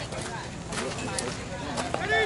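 Indistinct chatter of people talking, with a few short, sharp clicks.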